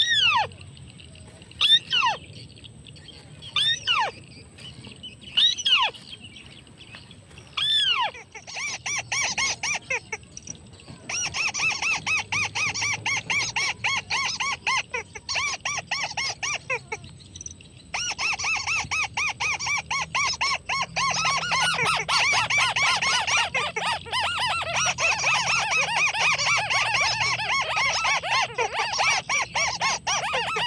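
White-browed crake calls: a single falling call about every two seconds at first, then from about eight seconds in a long, rapid chattering series that runs on with one short break.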